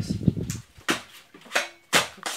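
A low thump at the start, then a handful of short, sharp crackles and knocks as a coconut and its dry husk fibres are handled on a concrete floor.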